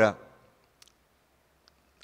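A man's voice trails off at the start. Then a quiet room with two faint, short clicks less than a second apart, from a handheld presentation remote being pressed to skip slides.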